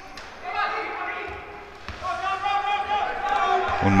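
Shouted calls echoing around a large sports hall during a wheelchair basketball game, two held cries about a second each, with a few faint low thuds of the ball on the court.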